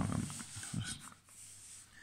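Faint graphite pencil moving on paper while circles are drawn, with the tail of a man's voice at the start and a short, soft breath or murmur a little under a second in.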